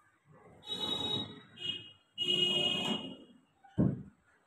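A cabinet drawer sliding along its runners with a grinding, whining rumble: one run about half a second in, a brief one, then a longer run. A short dull knock comes near the end, as the drawer meets the cabinet.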